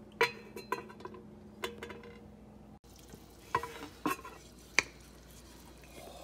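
Stainless steel pot and lid clinking as the lid is handled and the stew in the pot is stirred: a series of sharp clinks, each with a short ring, and a brief break about halfway through.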